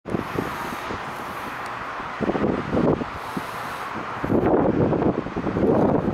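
Wind buffeting the microphone in irregular gusts, louder about two seconds in and again for the last couple of seconds, over a steady low road rumble while moving across the bridge.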